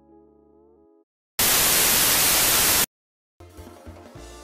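A soft held music chord fades out about a second in. It is followed by a loud burst of white-noise static lasting about a second and a half, which starts and cuts off abruptly. New music begins near the end.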